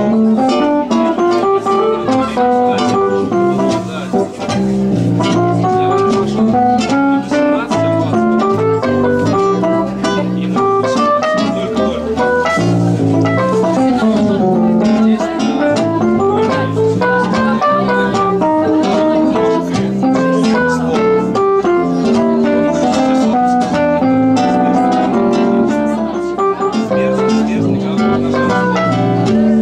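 Live instrumental music from a small ensemble: a nylon-string acoustic guitar playing plucked melodic lines over walking double bass, with electric keyboard chords underneath, continuous throughout.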